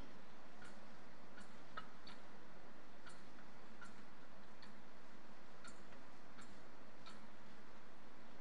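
Brass thurible swung on its chains to incense the Gospel book: a string of light metallic clicks, about one or two a second, as the chains and lid knock against the censer bowl.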